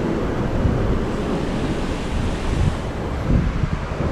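Wind rumbling in gusts on the microphone over a steady rush of air and sea, on the open deck of a cruise ship under way.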